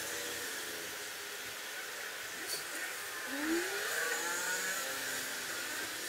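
Steady background hiss with faint, indistinct low sounds, including one short rising glide about three seconds in.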